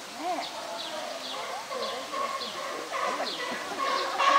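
Indistinct chatter of many visitors' voices, with a small bird chirping repeatedly, about two short high calls a second.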